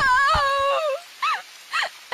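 A young woman crying in distress: a long wavering wail through the first second, then two short sobs.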